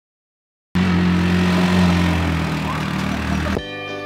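A steady engine-like drone with a hiss over it. It starts suddenly after a moment of silence and cuts off about three and a half seconds in, where music with bell-like chimes begins.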